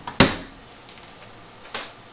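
A sharp knock of something hard handled on a wooden tabletop a moment in, followed by a lighter click near the end, as a newly unboxed power tool and its parts are set out.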